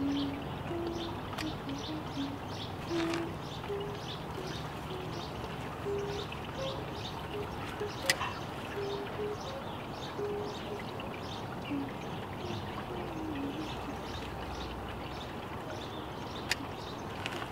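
Garden birds chirping repeatedly, with a string of soft, low, hooting notes at shifting pitches under the chirps.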